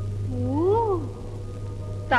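A single short vocal sound, about half a second in, gliding up and then back down in pitch, over a steady low hum.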